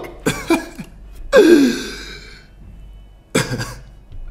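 A man laughing under his breath in short breathy bursts, the strongest about a second and a half in with a falling voiced tone, and a cough-like burst near the end.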